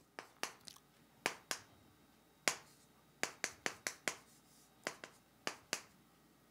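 Chalk striking and dragging on a chalkboard as Chinese characters are written stroke by stroke: about a dozen short, sharp clicks at an uneven pace.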